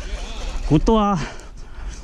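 Speech only: a man's voice, over a steady low rumble.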